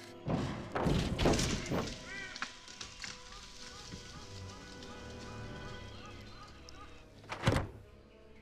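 Film sound effects of a crashed small plane's fuselage lodged in a tree: a cluster of heavy thuds and crunching in the first two seconds and one sharp loud thud near the end, over steady background music.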